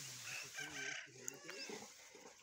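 Faint chicken clucking in the background: short, broken calls, with faint low voices under them.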